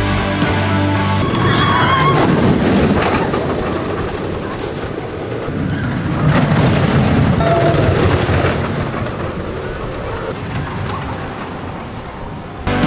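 Music cuts off about a second in and gives way to a steel roller coaster train, a Zierer ESC, running along its track: a rolling roar with a brief squeal about two seconds in. It is loudest near the middle as the train passes close, then fades.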